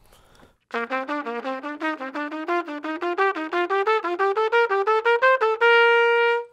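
Trumpet playing a major scale in a repeating pattern of quick, even notes, climbing gradually through about an octave. It starts about a second in and ends on a long held top note.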